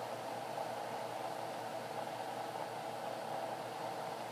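Steady background hiss with a faint, even hum underneath; no sudden sounds.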